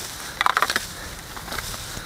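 A garden rake dragged through dry grass, dead leaves and ivy: a quick run of scraping strokes about half a second in, then fainter rustling.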